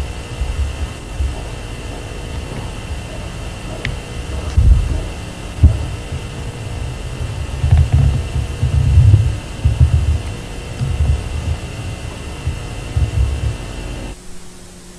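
Low, irregular rumbling thumps over a faint steady hum, with no speech. The thumps are strongest in the middle of the stretch.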